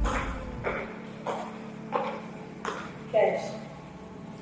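High-heeled shoes clicking on a hard tiled floor, one step about every two-thirds of a second, over a faint steady hum. A brief voice sound is heard near the end.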